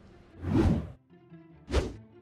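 Two whoosh transition sound effects over quiet background music: a longer swoosh about half a second in, then a shorter, sharper one near the end.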